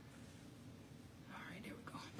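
Faint whispered, muttered speech starting a little after halfway through, over a low steady background hum.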